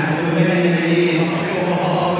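Football crowd chanting together: many voices holding a sung chant without a break.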